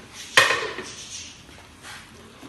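A metal ladle knocks sharply against an aluminium pressure-cooker pot about half a second in, ringing briefly, while thick rice is stirred. A fainter knock follows near the end.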